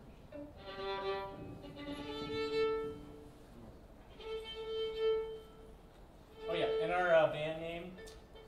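Fiddle being tuned: a few long bowed notes with pauses between, two open strings sounding together on some of them. A voice speaks briefly near the end.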